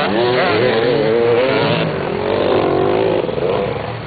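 Several dirt-bike engines revving close by as a pack of motocross motorcycles passes, their pitches rising and falling over one another. The sound drops away about three seconds in.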